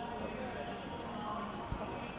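Indistinct voices of people talking nearby, with a single short knock near the end.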